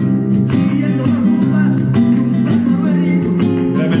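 Spanish guitar by the Córdoba luthier Manuel Ordóñez, capoed, strummed in a steady rhythm of chords.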